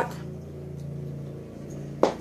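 Lawn mower engine running steadily outdoors, heard muffled from inside the house as an even, low drone.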